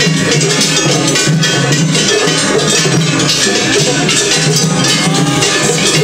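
Gion-bayashi festival music played from floats: taiko drums and rapidly struck hand gongs (kane) clanging in a steady, dense rhythm. It sounds like a tatakiai, with more than one float playing against each other at the same time.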